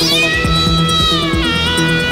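Synthesizer lead played on a keytar: a note swoops up into a held tone, then steps down to a lower held note about one and a half seconds in, over a steady low backing tone and a beat.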